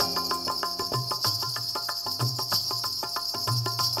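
Instrumental interlude of a Hindi film song played by a live band: a hand-held board of ghungroo bells jingles in a quick, steady rhythm over a moving bass line, with no singing.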